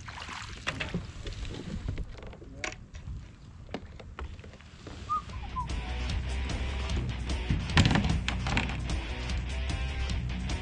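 Knocks and small splashes as a bass is netted and lifted into a kayak. About halfway through, background music with a steady beat comes in and carries on.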